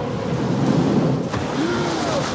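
Film soundtrack of loud, steady rushing and churning water from a boat's wake, with a boat engine running beneath it.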